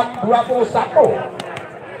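People talking between rallies of an outdoor volleyball match, with one sharp knock about one and a half seconds in.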